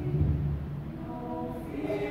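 Women's choir singing in harmony, holding sustained chords that move to a new, higher chord near the end.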